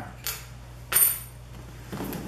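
Handling knocks as a boxed camera is picked up off a countertop: a faint tap, then a sharper clink with a brief bright ring about a second in.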